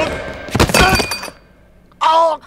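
A heavy thunk of a blow about half a second in, followed by a short voiced cry.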